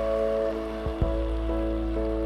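Water pouring from a plastic jug into a kadai of cooked greens, a steady splashing stream, under background music with steady held notes.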